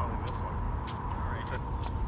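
Faint voices of players talking, heard across a tennis court over a steady low rumble of wind on the microphone and a steady thin high hum. A couple of faint ticks come about a second in and near the end.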